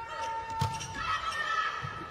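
Volleyball struck during a rally: two sharp ball contacts, one about half a second in and one near the end, over arena crowd voices and a held tone in the first second.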